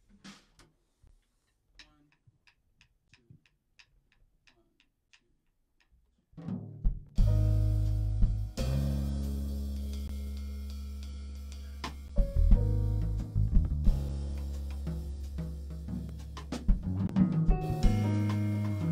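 Drum kit, electric bass and keyboard starting a piece: light, evenly spaced taps, two or three a second, then about six seconds in the full band comes in, with sustained bass notes and keyboard chords over the drums.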